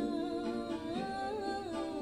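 A woman's voice singing a slow melody without words, with long held notes that slide from one pitch to the next.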